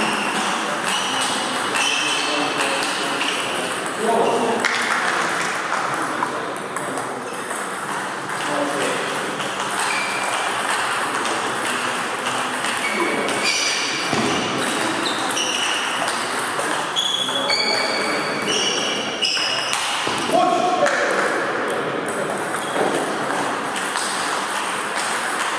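Table tennis balls ticking off bats and tables in quick rallies, each hit a short, ringing pitched click, in a reverberant hall with voices now and then.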